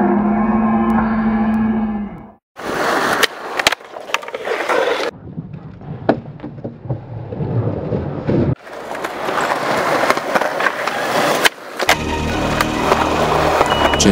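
Skateboard on concrete across several cut-together clips: wheels rolling with sharp clacks of the board popping and landing. The sound drops out briefly about two and a half seconds in and changes abruptly at each cut.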